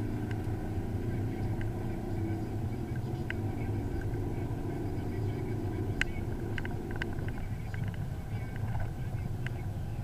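BMW E46 330d's inline-six turbodiesel heard from inside the cabin, pulling under acceleration through the Steptronic gears. Several sharp clicks come in the second half.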